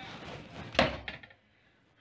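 Rustling handling noise, then a single sharp knock a little under a second in, with a short rattle after it.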